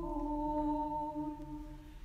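A woman singing Orthodox liturgical chant unaccompanied, holding one long note that steps slightly lower in pitch at the start and fades out near the end.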